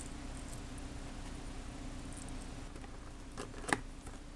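Cardboard CPU retail box being handled and opened by hand: faint rustling and ticks, then two sharp clicks near the end as the box opens, over a steady low hum.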